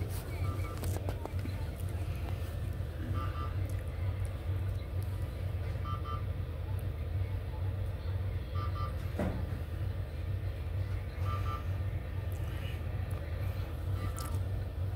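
Electronic alert from hospital bedside equipment: a short double beep repeating about every two and a half to three seconds, five times, over a steady low hum.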